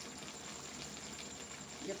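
Ridge gourd curry simmering in a kadhai, bubbling steadily in its own watery juices with faint scattered pops; the liquid has not yet cooked off, so it is still boiling rather than frying.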